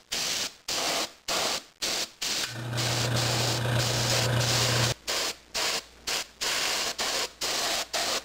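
Airbrush spraying paint in short hissing bursts, about two a second, as the trigger is pulsed. About two and a half seconds in it sprays steadily for a few seconds, joined by a low steady hum that stops when the spray does.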